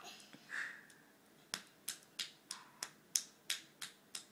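A child's hands making a quick run of about nine sharp snaps, roughly three a second, starting about a second and a half in.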